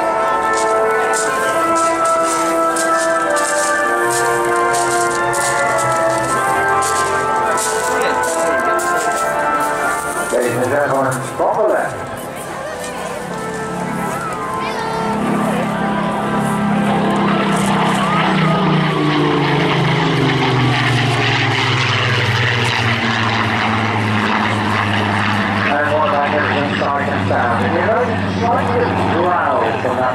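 Music with a steady beat for about the first ten seconds. Then, from about fifteen seconds in, a Spitfire PR Mk XIX's Rolls-Royce Griffon V12 engine passes by, its note falling steadily in pitch as it goes.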